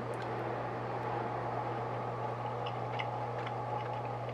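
Steady low hum with an even background hiss, and a few faint small clicks over it.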